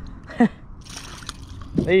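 A short falling vocal sound, then a brief splashing and dripping of water as a hooked pickerel is swung up out of the water on the line.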